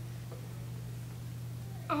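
A steady low electrical hum in a pause, with a child's voice starting to answer at the very end.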